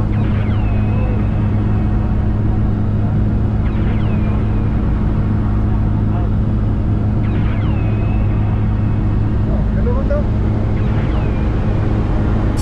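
Steady, loud drone of a skydiving aircraft's engine heard from inside the cabin, with a deep steady hum. Faint falling glides sound over it about every three and a half seconds.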